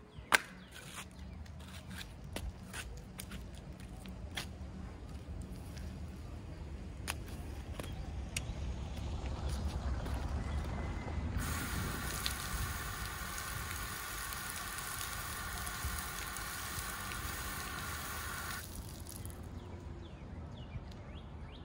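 Scattered wet slaps and clicks of bare feet and handling on a wet concrete pad, then an outdoor shower's spray starts abruptly about eleven seconds in. It hisses steadily for about seven seconds and cuts off sharply, as a push-button timed shower valve does.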